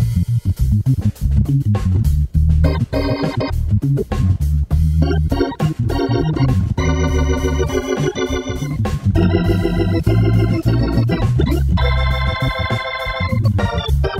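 Hammond B3 organ being played: a steady bass line under right-hand chords. The held chords waver in pitch, mostly from about seven seconds in.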